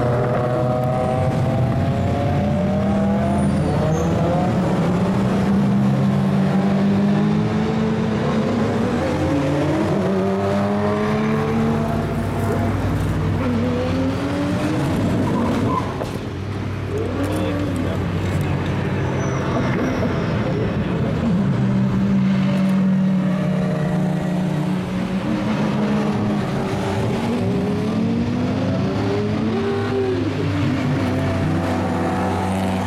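Several race car engines passing at speed, their pitch rising and falling through gear changes and overlapping as one car follows another, with a short dip in loudness about halfway through.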